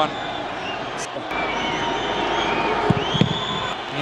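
Football stadium crowd noise: a steady din of many voices, with a few thin whistles rising and falling above it.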